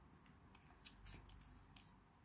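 A few faint, sharp plastic clicks from a multi-colour retractable pen's colour sliders being handled, the loudest just under a second in.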